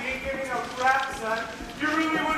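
Footsteps of shoes on a stage floor as actors walk across, with voices over them.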